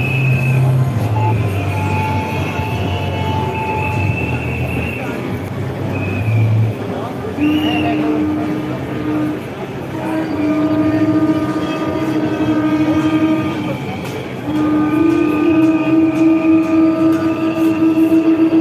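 Long, steady horn blasts sounding one after another over the noise of a large walking crowd; near the end a horn sounds in quick pulses.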